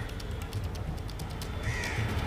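A crow caws once near the end, over a steady hum of outdoor street noise.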